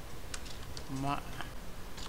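A few scattered keystrokes on a computer keyboard.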